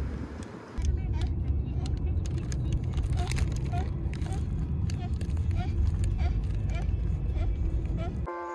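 Steady low road and engine rumble inside the cabin of a moving car, starting sharply about a second in, with light regular ticks about twice a second from the middle on.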